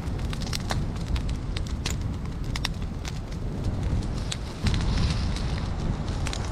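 Brush pile of dry branches burning, crackling and popping with many irregular sharp snaps over a steady low rumble.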